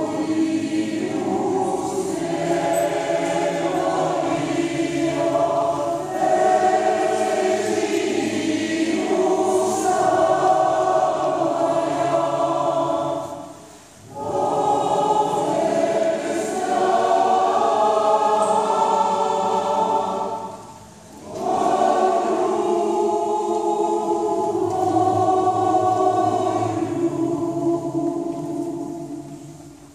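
A large mixed choir of women's and men's voices singing together in long sustained phrases, breaking off briefly for breath about halfway through and again about three-quarters of the way through.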